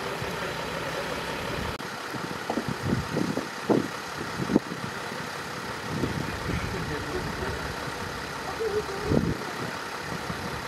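Engine of a parked emergency van idling steadily, with short bursts of voices a few seconds in and a spoken word near the end.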